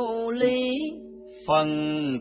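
Vietnamese Buddhist chanting in a slow, sung style over a steady held background tone. A higher voice draws out long notes, fades about a second in, and a lower male voice begins the next chanted line about a second and a half in.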